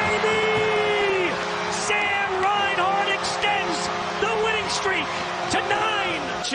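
Arena goal horn blaring steadily for a home-team goal, over a cheering crowd and excited shouting voices; the horn stops shortly before the end.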